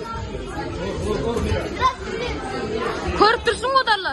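Spectators' chatter echoing in a large hall, with one voice calling out loudly several times in short bursts near the end.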